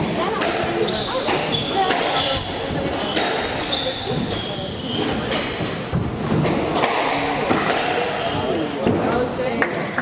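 A squash rally: the ball struck by racquets and hitting the court walls in sharp, irregular knocks, with sports shoes squeaking in short high chirps on the wooden court floor.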